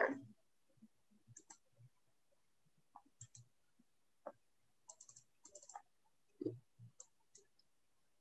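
Faint, scattered computer mouse clicks, singly and in small groups, with a quicker run of clicks about five seconds in.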